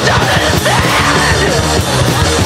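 Hardcore punk band recording playing mid-song, with vocals over guitar, bass and drums.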